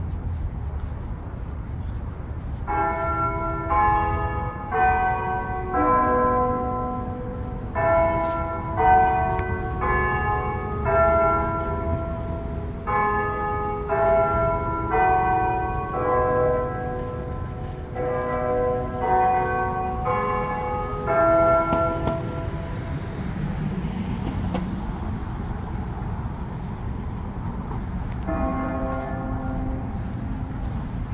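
Church tower bells chiming a tune, one note after another at about two a second, in four phrases that stop about 22 seconds in; a new phrase starts near the end. Low street rumble lies underneath.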